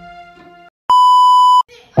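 Fading last notes of the credit music, then a loud, steady electronic beep, a single pure tone of under a second, about a second in, added in the edit. A song comes in right at the end.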